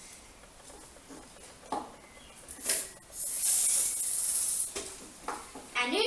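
A spray hissing steadily for about a second and a half, starting about three seconds in, after a light knock and a short puff.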